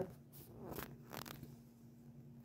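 Three brief, soft rustles of something being handled, over a faint steady hum.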